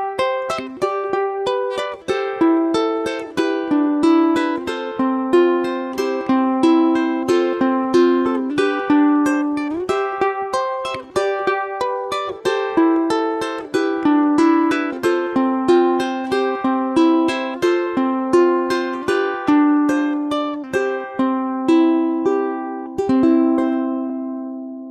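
Solo ukulele fingerpicked in a steady, repeating arpeggio pattern, the plucked notes moving through a series of chord changes. The last chord is left to ring and fades near the end.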